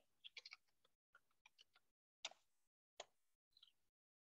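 Faint computer keyboard keystrokes in near silence: a quick run of key taps about a quarter second in, then scattered single taps, the clearest a little past two seconds and another at three.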